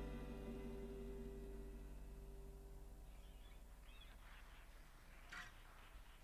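The band's last chord ringing out and fading away over about three seconds, then the quiet of the hall with faint small noises and one short soft sound about five seconds in.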